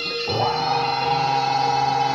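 Live jaranan accompaniment music, with a long held note entering about a quarter second in over the ensemble's steady sound.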